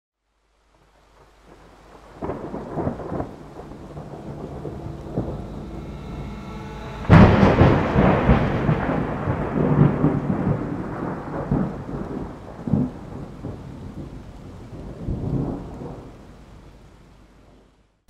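Thunderstorm with rain: rumbles of thunder build from about two seconds in, then a loud thunderclap about seven seconds in, and rolling rumbles that fade out near the end.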